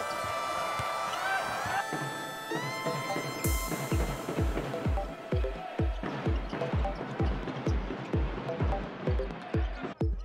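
Background electronic dance music: held synth tones that slide up and down in steps. About three and a half seconds in, a steady kick-drum beat starts.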